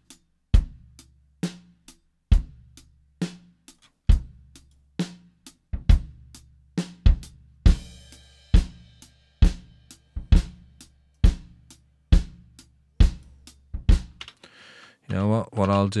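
Playback of a live-recorded drum kit: a kick drum with an added sub-bass layer and overhead microphones carrying snare and cymbals, hitting at a slow steady beat of about one stroke a second. The drums stop about a second and a half before the end.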